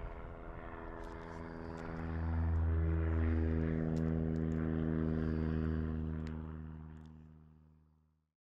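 Single-engine propeller plane flying by, its steady engine and propeller drone growing louder about two seconds in, then fading out over the last two seconds.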